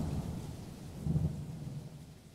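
A low rumbling noise that began abruptly just before and fades away over about two seconds, swelling briefly about a second in.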